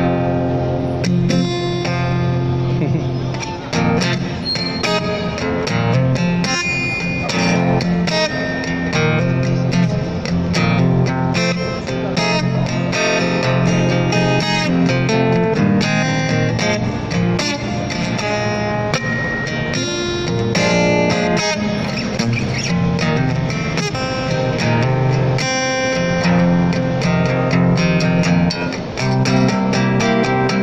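Amplified acoustic guitar playing an instrumental blues introduction, with picked single-note runs and chords over a steady low bass line.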